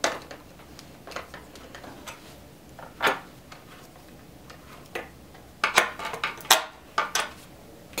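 Skate tool working the truck bolts and nuts as a skateboard truck is taken off the deck: scattered metal clicks and clinks, a sharper clack about three seconds in and a run of clicks near the end.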